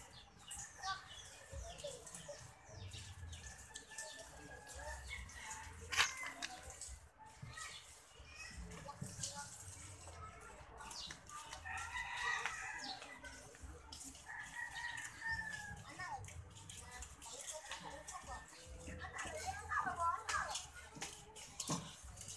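Outdoor background of distant voices and animal calls, with one sharp click about six seconds in.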